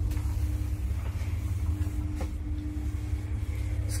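Running noise inside a moving KMZ passenger lift car travelling at about 1.4 m/s: a steady low rumble and hum with one constant tone, and a faint click about two seconds in.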